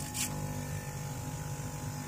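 A steady machine hum, with a short hiss about a quarter second in.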